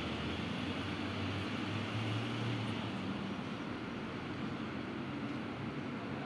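Steady low rumble of outdoor background noise, with a low hum that swells briefly about two seconds in.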